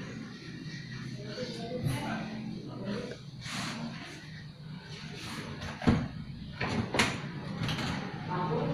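Rustling and knocking from things being handled at close range, with two sharp knocks about a second apart in the second half, the first the loudest.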